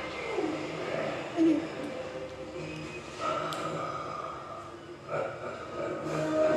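Television programme audio playing in the room: a mix of voices and sound effects, with a short loud blip about one and a half seconds in and a held tone in the second half.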